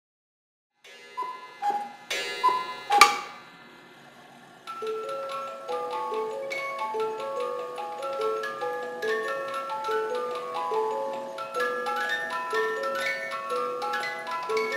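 Cuckoo clock giving two cuckoo calls, each a falling two-note tone, with sharp clicks among them. From about five seconds in, its music box plays a tinkling tune over steady ticking.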